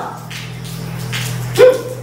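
A single short, loud animal call about one and a half seconds in, over a steady low hum.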